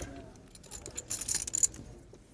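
Poker chips clicking together in quick succession as a player handles a stack at the table, most densely in the second half-second of a brief flurry about a second in.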